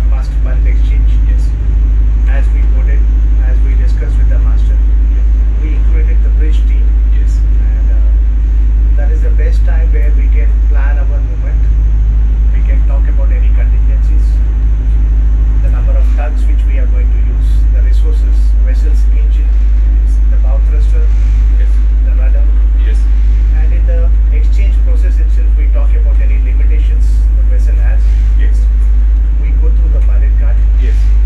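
Steady low drone of a pilot boat's engine, heard inside its wheelhouse, with men's voices talking over it.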